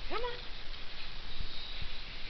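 A Scottish terrier gives one short whine that rises in pitch and then holds briefly, followed by a few faint knocks.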